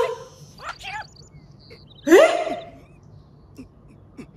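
Voices of animated characters from the episode's soundtrack: short cries about a second in, then a loud, rising shout a little after two seconds in.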